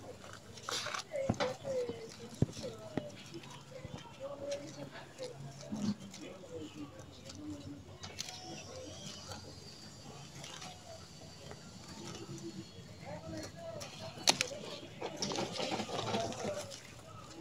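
Rustling of pepper-plant leaves and wire fencing with a few sharp clicks as a ripe red bell pepper is picked by hand.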